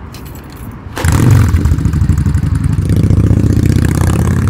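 A cruiser motorcycle's engine, quieter for the first second, comes in loud about a second in with a low pulsing note and holds as the bike pulls away.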